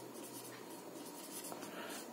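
Faint sound of a marker pen writing a word on a whiteboard.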